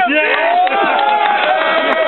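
Several men cheering and yelling over one another, with long drawn-out shouts and laughter.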